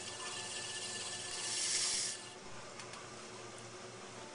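A bladed trimming tool cutting excess clay from the base of a freshly thrown bowl on a spinning potter's wheel: a hissing scrape that swells to its loudest about a second and a half in, then drops away to a faint hiss.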